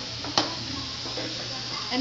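Shrimp frying in butter, garlic and white wine in an aluminium pan, sizzling steadily, with a single sharp click about half a second in.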